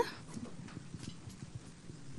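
Quiet room with faint, irregular light taps and knocks scattered through it.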